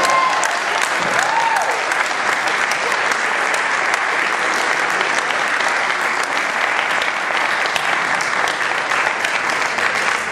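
Audience applauding steadily, with a few voices whooping in the first second or two.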